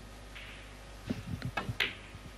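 Snooker shot: the cue tip strikes the cue ball, which then clicks into a red. There are a few short knocks from about a second in, with the sharpest click near the end.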